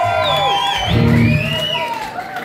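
Live band music led by electric guitar, with voices shouting over it; a low, full guitar chord sounds about a second in and the level drops off towards the end.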